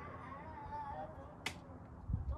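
A single sharp click about one and a half seconds in, over faint voices in the background.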